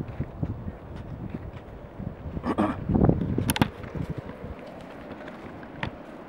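Wind buffeting the microphone outdoors, with footsteps on sandy ground and a few brief louder scuffs about halfway through; a short sharp click near the end.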